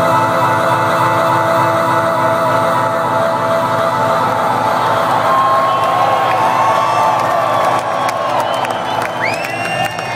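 Electronic dance music played loud over a festival sound system with a steady beat, and a crowd cheering and whooping over it. In the last second or so, shrill whoops glide up and down above the music.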